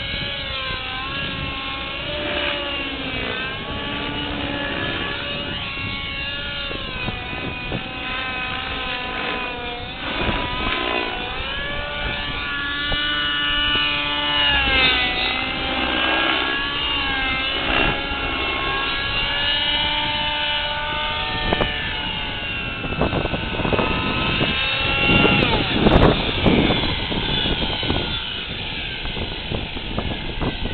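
Nitro Align T-Rex 600 RC helicopter's glow engine and main rotor in aerobatic flight, the pitch rising and falling over and over as the throttle and blade pitch change. There are some sharper, louder thumps near the end.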